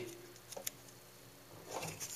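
Mostly quiet room tone with faint small clicks from a Sig P250's slide and recoil spring assembly being handled, one sharper click a little past half a second in.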